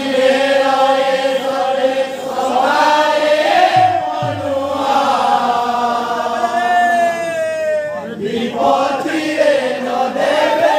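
Men's voices singing a devotional kirtan chant, long held notes that bend slowly, with the melody sliding down and breaking off briefly about eight seconds in before the singing resumes.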